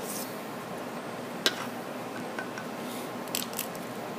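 Light metallic clicks of a spring-lever cookie scoop over steady kitchen room noise: one sharp click about a second and a half in and a couple of fainter ones near the end.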